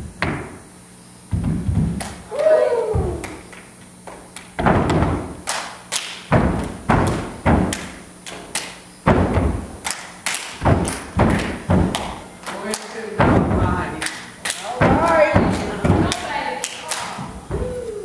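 Children's feet stamping on a hard stage floor in a dance routine, a steady run of heavy thumps about three every two seconds, with young voices calling out between the beats.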